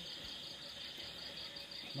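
Crickets chirping: a steady, high, rapidly pulsing trill.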